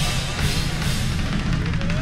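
Live gospel band playing: a drum kit with bass drum and snare driving the beat, under electric guitar.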